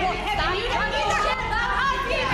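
Several voices talking over one another in a heated argument, the words blurred together.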